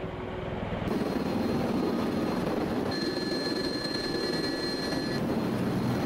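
V-22 Osprey tiltrotor landing: steady rotor and turboshaft engine noise. About a second in, the sound turns abruptly louder and fuller, and a thin high whine sits over it from about three to five seconds in.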